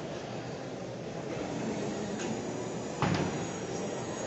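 Steady background hubbub of a large indoor hall, with faint distant voices, and a single sharp knock about three seconds in.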